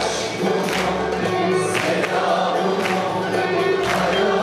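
A male soloist and a mixed choir singing Turkish art music together in sustained, held notes, with sharp percussion strikes through it.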